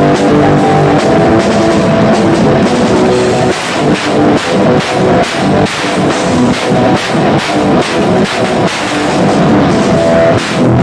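Live punk rock band playing loud distorted electric guitar, bass and a close-miked drum kit. The first few seconds are held chords over steady drumming. After that the band plays choppy stop-start hits, chords and drums struck together about three times a second.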